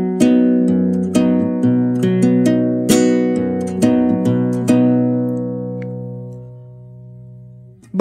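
Nylon-string classical guitar, capoed at the second fret, fingerpicked in an A major chord shape: a bass note, an arpeggio, a percussive strum hit and alternating bass notes, repeated. From about five seconds in the last chord rings on and fades away.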